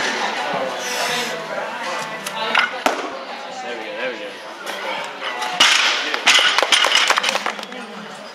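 A snatch with a loaded Olympic barbell and bumper plates: one sharp knock from the bar near three seconds in, then from about five and a half seconds in a run of sharp clanks and clatter as the bar is brought down onto the platform.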